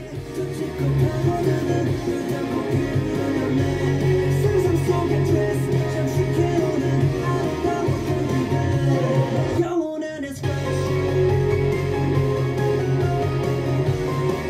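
Rock song playing, with a male singer and electric guitar over bass and drums; the music breaks off for under a second about ten seconds in, then comes back.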